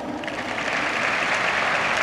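Crowd applauding in the stands after a player is announced in the starting lineup; the clapping begins about a quarter second in and grows slightly louder.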